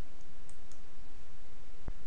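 Computer mouse clicking: two faint, light clicks about half a second in and one short, sharper tap near the end, over a steady background hiss.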